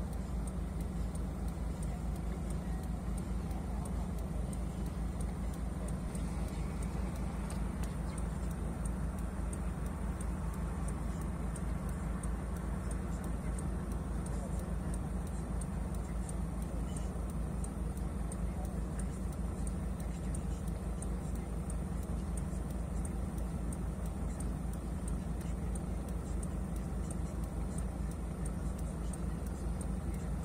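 Mercedes Sprinter van's engine idling steadily, heard from inside the cab while the van stands at the roadside.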